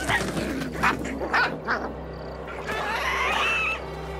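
Cartoon sound effects: a few short scuffing strokes in the first two seconds, then an animated character's wavering, whiny vocal cry about three seconds in, over a low steady drone.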